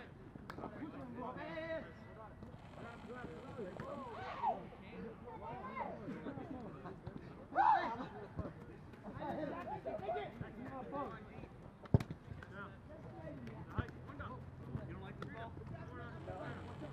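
Players' voices calling and shouting across an open field, with one louder shout about eight seconds in. A single sharp knock about twelve seconds in is the loudest sound.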